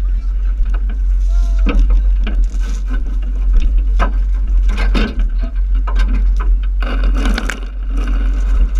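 Scattered shouts and voices of people in a water fight, with short hissing bursts of spray from hand-pumped water cannons, over a steady low rumble of the moving boat.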